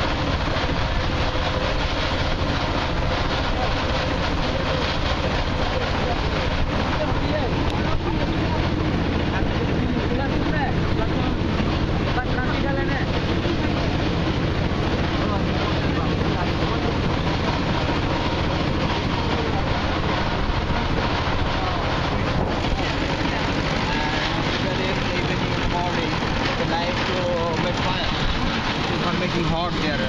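Outdoor street noise: people's voices in the background over a steady low rumble, which drops away about three-quarters of the way through.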